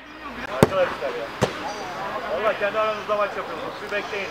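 A football kicked twice, two sharp thuds under a second apart, with players' voices calling out in the background.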